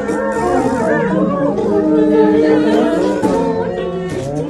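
Three performers making music with their voices and cupped hands, without instruments: several wavering, sliding pitched lines overlap, with one long steady note held through the middle.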